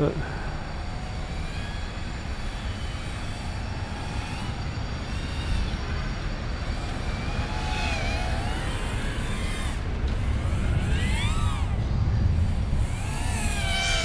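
Brushless motors and propellers of a small 65 mm toothpick FPV quadcopter in flight: a buzzing whine that rises and falls in pitch again and again with the throttle, over a steady hiss.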